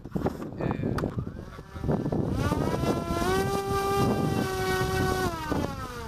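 Electric motor and propeller of an RQ-11 Raven hand-launched drone being run up before launch: a buzzing whine that climbs in pitch about two seconds in, steps up again and holds, then winds down near the end.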